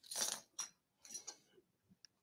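A few short bursts of clinking and rattling, as of small hard objects being handled close to a microphone. The loudest comes right at the start, with two smaller ones within the next second and a half.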